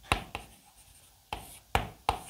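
Chalk writing on a blackboard: short, scratchy strokes and taps, two near the start and then three more in quick succession in the second half.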